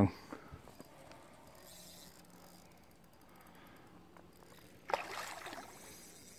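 Mostly quiet, then a short splash about five seconds in as a hooked cutthroat trout thrashes at the water's surface.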